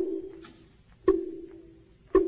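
Wooden fish (mõ) struck about once a second, keeping time for Vietnamese Buddhist chanting. Each hollow knock leaves a low tone that dies away within a second.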